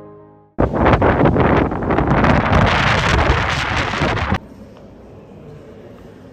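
Wind on the microphone, loud and gusty, starting suddenly about half a second in and cutting off abruptly after about four seconds. A quieter steady indoor background follows.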